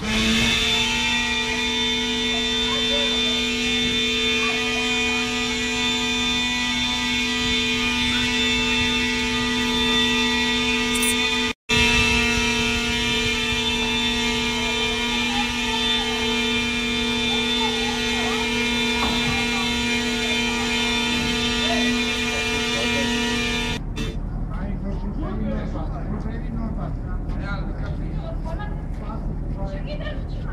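A car horn sounding continuously in one long, steady note. It drops out briefly near the middle and then cuts off suddenly about four-fifths of the way through, leaving street noise and faint voices.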